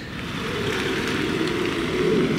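Box-bodied delivery van driving past close by on a narrow lane, its engine and tyres growing steadily louder as it passes.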